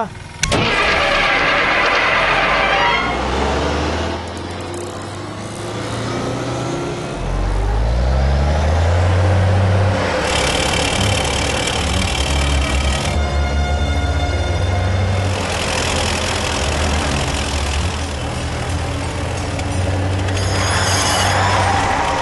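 Bus engine picking up and revving, rising in pitch, then running on steadily as the bus pulls away. A horn sounds for about two seconds midway.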